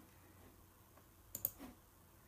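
Two quick clicks on a laptop, close together about one and a half seconds in, over quiet room tone.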